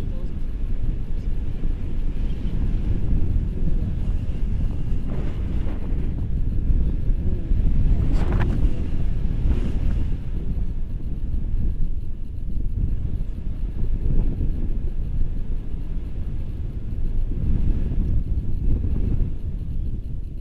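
Wind rushing over the microphone in flight under a tandem paraglider: a steady low rumble that swells and eases, with a few brief sharper noises between about five and ten seconds in.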